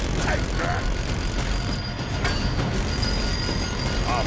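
Film battle sound mix: a rotary machine gun firing in a sustained stream under a dense, continuous rumble of battle noise.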